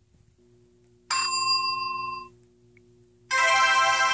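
Two electronic chime tones. A bell-like ding about a second in rings for about a second and cuts off, then a louder, fuller chord starts near the end and rings on, slowly fading.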